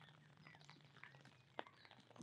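Near silence: faint outdoor ambience with a low steady hum, a few soft scattered ticks and a few brief faint chirps.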